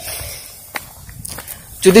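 Footsteps of a person walking on a paved path: a few soft steps during a lull, with a man's voice starting up again near the end.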